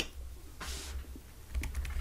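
Faint clicking at a computer, with a short hiss about half a second in and a steady low hum underneath.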